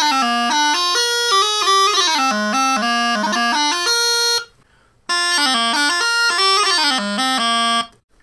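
Cocobolo long practice chanters playing two short Highland pipe phrases with quick grace-note ornaments. The new Gibson chanter plays first and stops a little over four seconds in. After a short gap a second phrase follows on his older, darker McClellan cocobolo chanter, and the two sound very similar.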